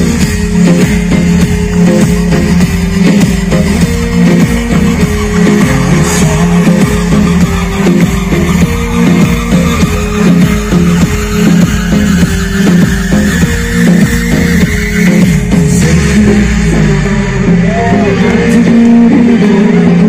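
Live rock band playing through a concert sound system: electric guitar, bass and drum kit in a steady, loud beat, with a slowly rising tone about halfway through.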